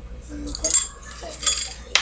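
A few short, sharp clinks, like small hard objects knocking together, about two-thirds of a second in, at a second and a half, and just before the end.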